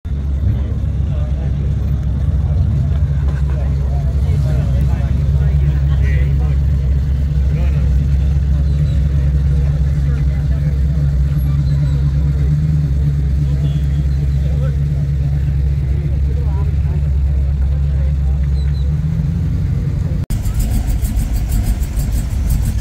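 Ford Fairlane convertible's engine running steadily at idle, a deep even hum, with faint voices of people around it. The sound breaks off for an instant near the end.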